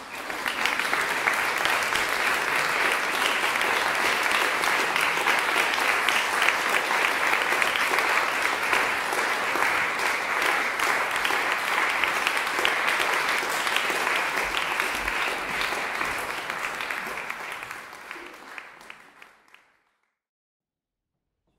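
Audience applauding: dense clapping that starts abruptly, holds steady, then dies away in the last few seconds.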